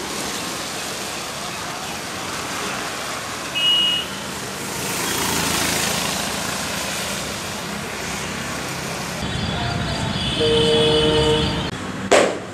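Street traffic noise with vehicle horns: a short high beep a little under four seconds in, a vehicle passing a little later, and a longer horn honk near the end.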